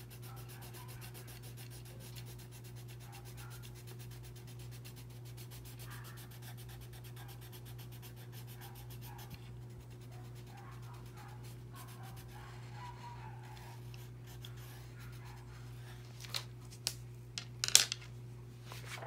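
Coloured pencil scribbling rapidly back and forth on paper to shade in a solid patch, over a steady low hum. Near the end come a few sharp clicks as the pencil is set down on the wooden desktop.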